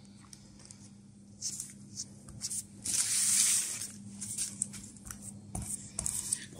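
Fork tines pressed along the edges of puff pastry on baking paper: a series of soft taps and scrapes with a short rustle of the paper about three seconds in.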